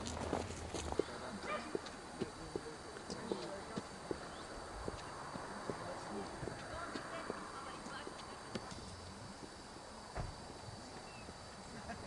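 Footsteps on a roadway at a walking pace of about two steps a second, fading out after the first few seconds, with faint voices in the background.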